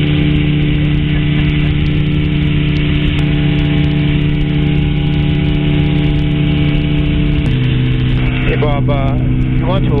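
Weight-shift trike's engine and pusher propeller droning steadily in flight, the drone dropping to a lower pitch about three-quarters of the way through.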